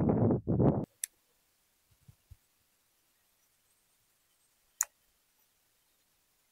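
A voice briefly at the start, then near silence broken by two sharp clicks, one about a second in and a louder one near the end, with a couple of faint low knocks between them.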